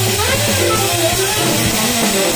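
Small jazz combo playing live: a drum kit kept going on the cymbals, a double bass line underneath, and melodic lines moving on top.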